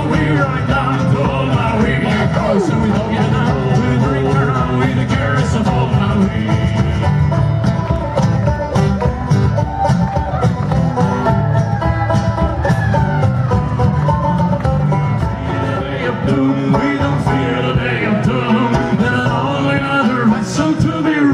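Live Celtic folk tune played on banjo and acoustic guitar over a bodhrán beat, without singing.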